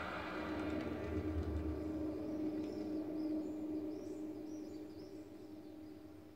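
Documentary title-sequence soundtrack heard from a television speaker: a held low drone under a rushing wash of sound, with faint high chirps in the middle, fading toward the end.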